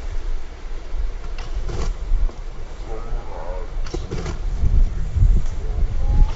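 Wind buffeting a phone microphone outdoors: a steady low rumble with gusts. Faint, brief voices come through about halfway through.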